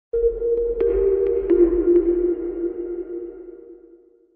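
Short electronic outro music sting: a sustained low chord over a deep bass hum, with a few light ticks, starting just after a brief gap and fading out near the end.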